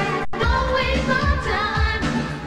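A woman singing a pop ballad live into a handheld microphone over a band with a steady bass line. The sound drops out for a split second about a quarter of a second in.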